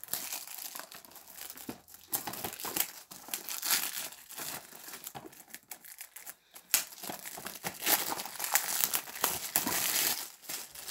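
Plastic shrink wrap being torn and peeled off a DVD case, crinkling and crackling continuously under the fingers.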